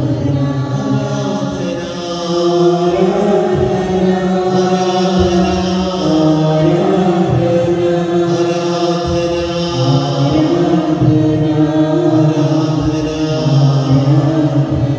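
A man's voice chanting a slow sung prayer into a microphone, holding long notes that change every couple of seconds.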